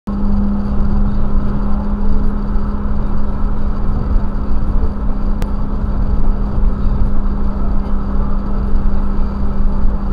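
Inside the cabin of a BMW E36 M3 cruising on a highway: its straight-six engine drones on one steady note over low road and tyre rumble. A brief click comes about halfway through.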